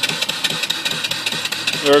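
Homemade single-cylinder steam engine (3-inch bore, 3-inch stroke) running steadily, driving a belted alternator: a fast, even beat of exhaust and clattering moving parts over a steady hiss.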